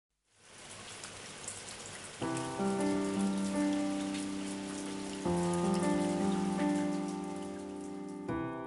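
Steady rain with scattered drop taps fades in. About two seconds in, sustained piano chords enter over it, moving to a new chord about five seconds in.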